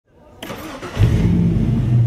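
Batmobile's engine cranking briefly and catching about a second in, then running with a loud, steady low rumble.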